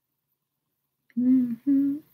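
A woman's closed-mouth hum in two short parts, the second a little higher, like an "mm-hmm", about a second in after a silent pause.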